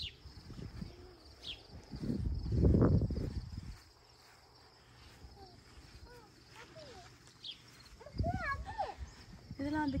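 Outdoor garden ambience: a faint steady chirring of insects, a loud low rumble lasting about two seconds near the middle, and a voice toward the end.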